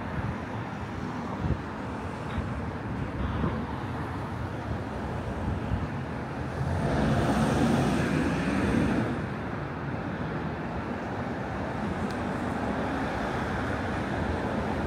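City street traffic noise, with one vehicle passing close by about seven seconds in and growing louder for about two seconds before fading.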